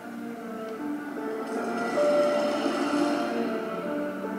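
Horror film's opening score music playing, with sustained held notes that swell louder about two seconds in under a wash of high hiss, then ease back.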